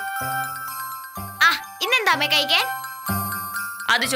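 Light, tinkling background music of sustained chime-like tones, with a woman's speech over it about a second in and again near the end.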